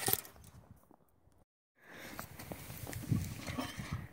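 Handling noise as a hand rubs over the camera's microphone, then irregular crunching steps in snow. The sound cuts out completely for a moment about a second and a half in.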